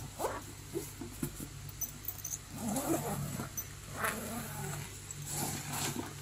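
Hands handling a nylon backpack, opening its zippered compartments: the fabric rustles and scrapes irregularly, with a few louder handling noises.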